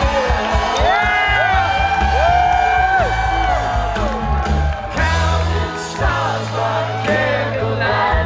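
Live rock band with electric guitars, bass, organ and drums, heard from the crowd in front of the stage. A few audience members let out long whoops over the music about a second in.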